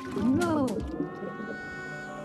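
Cartoon underscore: a pitched, whale-like tone swoops up and falls back within the first second, then gives way to a held chord.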